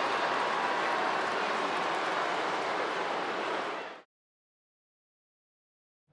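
Steady arena crowd noise with no distinct voices or impacts, fading out about four seconds in to complete silence.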